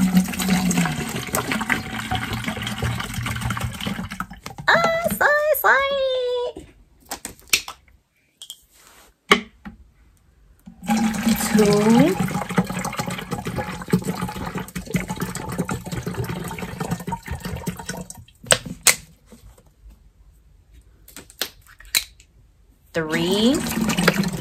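Water being poured from a small plastic water bottle into a large plastic gallon water jug, in two long pours. The pours are separated by quiet stretches with a few clicks of plastic bottle handling.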